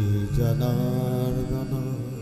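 Sanskrit devotional chant sung over the sound system: a singer holds a long note, moves to a new held note about half a second in, and lets it fade.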